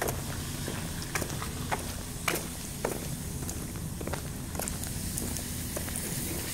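Footsteps on pavement, a sharp step every half second to a second, over a steady low rumble.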